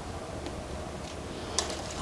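A single sharp click about one and a half seconds in, as a small plastic part of a 1/6-scale figure's night-vision goggle mount snaps into place, over a low steady hum.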